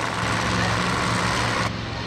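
Supercharged drag-racing engine of a 1959 Cadillac Coupe DeVille running at a low idle with a steady rumble. A hiss of noise above it cuts off suddenly near the end.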